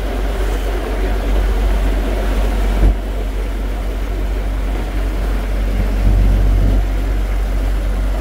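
Steady low rumble of a small harbour ferry under way, its motor running with water rushing along the hull. One brief knock about three seconds in.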